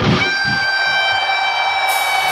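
Heavy metal band breaks off and leaves a single high electric guitar note held, steady in pitch, ringing on its own without drums or bass.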